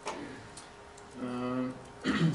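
A few short, sharp computer mouse clicks, the first one the loudest, with a brief hummed voice sound a little over a second in.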